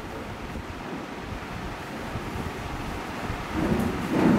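Steady background noise of a hall, a low rumble with hiss and no clear events. There is a brief louder sound near the end.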